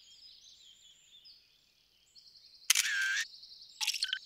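Camera-shutter sound effect from a cartoon wrist gadget taking a photo, about two-thirds of the way in, followed near the end by two short electronic blips as the gadget sends the photo as a message.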